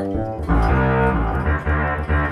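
Distortion bass synth sound triggered from an electric guitar through an AXON guitar-to-MIDI converter, played high on the neck where the fret-split switches the patch. Low, held bass notes come in about half a second in.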